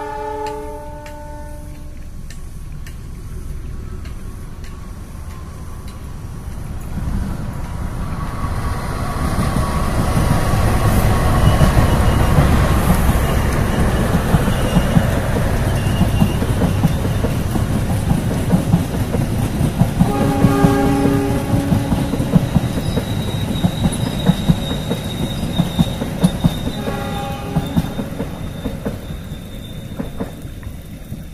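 CC206 diesel-electric locomotive and its passenger coaches passing close by. A horn blast ends about a second in. Engine and wheel rumble then builds to a peak a few seconds later and goes on with the clickety-clack of wheels over rail joints as the coaches go by, with two more horn sounds later on.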